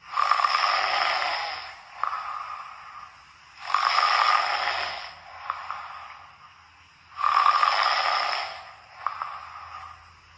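Snoring, three long snores, one at the start, one about three and a half seconds in and one about seven seconds in.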